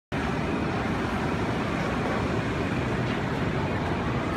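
Steady rumbling background noise in an airport tram station, even in level throughout, with a tram standing behind the closed platform doors.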